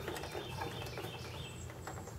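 Faint small clicks and rustles of a SATA power cable and plastic parts being handled inside an open desktop computer case, with a few faint high chirps in the background.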